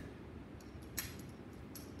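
A light click about a second in, with a few faint ticks around it, over quiet room tone: a small funnel being fitted into the top of a glass burette.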